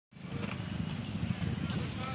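Wind buffeting the phone's microphone as a constant, uneven low rumble, with faint voices of people in the background.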